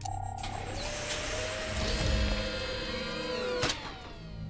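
Cartoon sci-fi machine sound effect: lab apparatus running with a noisy mechanical hum and electronic tones that hold and then slide down in pitch, ending in a sharp clunk near the end. Music plays underneath.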